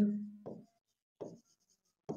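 Stylus writing on an interactive display screen: faint strokes with two short soft knocks of the pen on the glass.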